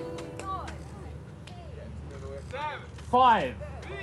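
People's voices calling out in short shouts that rise and fall in pitch, the loudest a little past three seconds in, over a low steady hum.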